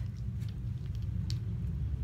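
A low, steady background rumble, with one faint click a little over a second in.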